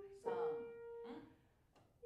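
A single held note on a grand piano, fading over about a second, with a brief spoken sound over its start, then a short near-silent pause.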